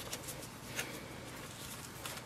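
Faint rustling and light ticks of hands handling and folding plastic-coated mesh shelf liner, with one slightly clearer tick about a second in.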